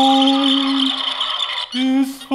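A man's voice holding one long sung note, with a steady grainy rattle high above it; the note breaks off briefly near the end.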